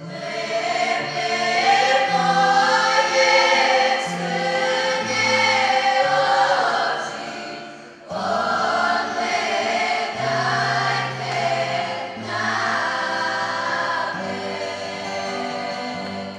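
Children's choir singing a song over sustained low notes that shift in pitch. The sound breaks off briefly about halfway through before the next phrase begins.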